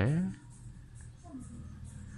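A spoken word trailing off at the start, then quiet room tone with a low, steady hum.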